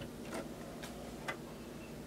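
Three light mechanical clicks from a Nakamichi 1000MB CD transport, stopped, about half a second apart.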